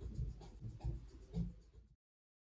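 Faint, muffled bass beat of music playing from a car parked outside, a few low thumps a second; it cuts off abruptly near the end.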